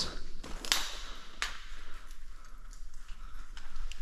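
Caving rope-ascent gear being handled: two sharp clicks about a second in, then softer scattered clicks and rustling as the hand ascender and foot loops go onto the rope.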